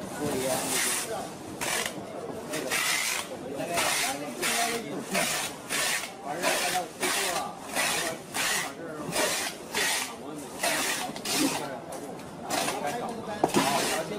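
Packing tape ripping off a handheld tape dispenser in fast, rapid strokes, about two harsh rasping pulls a second, with a short pause near the end before it starts again.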